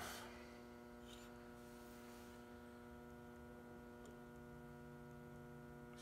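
Near silence with a faint, steady electrical hum: room tone.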